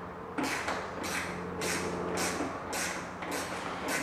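An open-end wrench loosening a roof-support bolt on a Club Car Precedent golf cart: a run of short metallic scraping strokes, about two a second, over a steady low hum.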